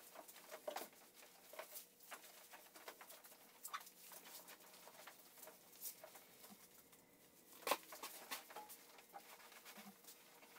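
Faint, scattered rubbing and light taps of a towel being wiped along a hanging canoe's hull to dry it, with one sharper knock about three quarters of the way through.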